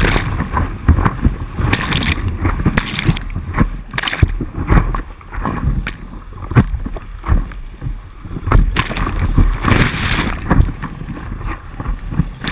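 Whitewater rapids rushing and splashing over the deck of a stand-up paddleboard, heard from a board-mounted camera: a continuous roar broken by irregular bursts of spray, with water sheeting over the camera near the start and buffeting the microphone.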